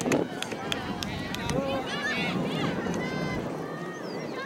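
Sideline sound of a soccer match: high-pitched voices shouting and calling out across the field, with a single thump just after the start.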